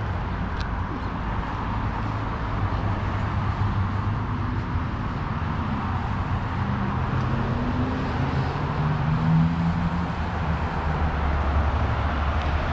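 Steady road traffic noise with a low rumble, and an engine note that rises and falls in the second half.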